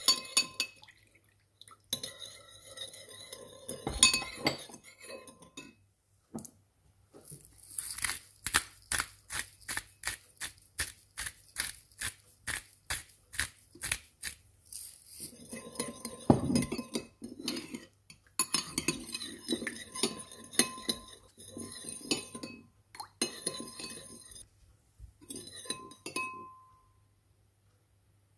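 Metal spoon stirring a sauce in a ceramic bowl, clinking against the sides, with a steady run of quick clinks about three a second in the middle. There are also a few louder knocks.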